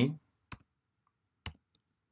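Two single computer keyboard keystrokes about a second apart, typing the last letters of a word into a form field.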